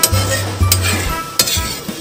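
Spatula stirring ground pork in boiling broth in a wok, scraping irregularly against the pan while the liquid bubbles and sizzles.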